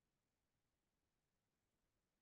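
Near silence, with no sound at all.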